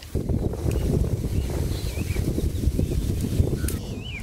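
Low, gusting rumble of wind buffeting the microphone, with a few faint bird chirps.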